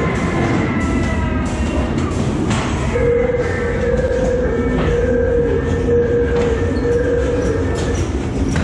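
Ghost train car rolling along its track, wheels rumbling and clacking over the rail joints. About three seconds in, a steady high tone joins and holds until near the end.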